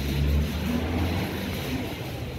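Low rumble of a motor vehicle engine running nearby in street traffic, loudest about the first half-second and then steadier, over a general street hiss.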